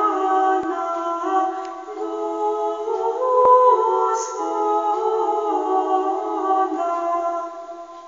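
Unaccompanied vocal music: several voices singing held chords that change every second or so, fading briefly near the end.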